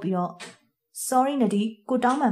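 Speech only: a voice narrating in short phrases, with a brief pause a little after half a second in.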